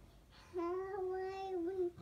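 A young child singing one long held note that starts about half a second in, wavering slightly near its end.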